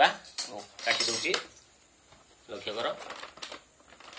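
Clinking and clattering, like dishes or metal utensils knocking together, in two bursts: about a second in and again near three seconds.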